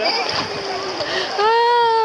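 Seawater splashing and sloshing around someone standing in the sea, then about a second and a half in, a voice lets out a long, drawn-out "aah".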